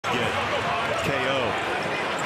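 A television basketball commentator talking over steady arena crowd noise.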